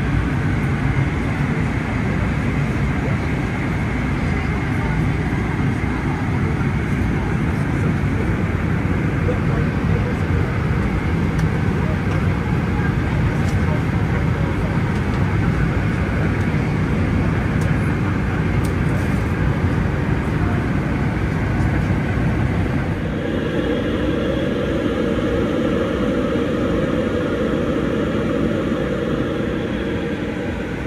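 Steady cabin noise of an airliner in cruise: engine and airflow noise heard from inside the cabin. Its tone changes about two-thirds of the way through.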